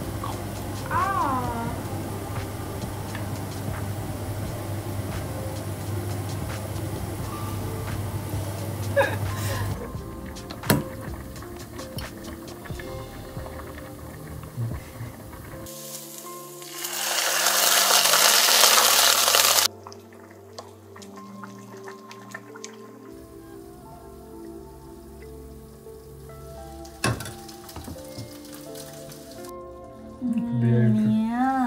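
Background music, with a loud burst of sizzling for about three seconds past the middle as liquid from a cup is poured into a hot pan of fried tomato paste and shallots.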